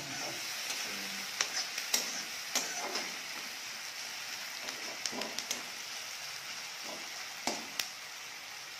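Sliced onions sizzling in hot oil in a kadhai, browning, with a steady hiss. A metal spatula stirs them, scraping and knocking against the pan in scattered clicks, two close together near the end.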